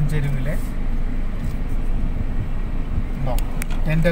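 Steady low rumble of a car driving, heard from inside the cabin: engine and road noise, with a few faint clicks near the end.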